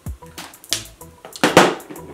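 Quiet background music with three sharp clicks from a mini lipstick being handled, the loudest about a second and a half in.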